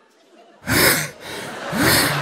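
Breathy, gasp-like vocal exclamations, three of them about a second apart, starting just over half a second in.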